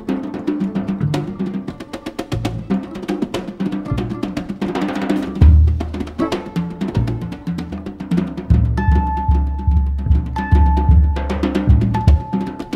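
Drum kit played with bare hands, a fast run of strokes on the snare head, with an upright double bass playing low notes beneath from about halfway through.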